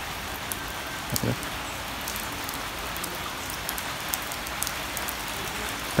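Steady rain falling, with individual drops ticking close by now and then.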